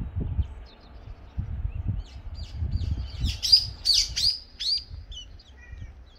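A small songbird calling in quick runs of sharp, downward-sweeping chirps, loudest a little past the middle, with a few short notes near the end. Uneven low rumbling sits under the first half.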